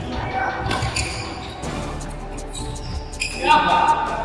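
Badminton doubles rally in a large indoor hall: a string of sharp racket hits on the shuttlecock, with a short shout from a player near the end.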